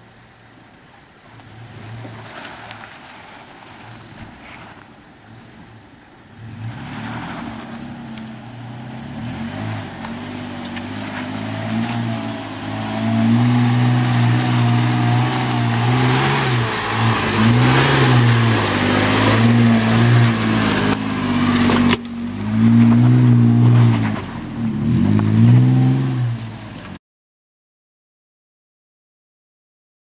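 Toyota FJ Cruiser's 4.0-litre V6 engine revving up and down under load on a steep off-road climb. It starts faint and grows much louder from about six seconds in, then cuts off suddenly near the end.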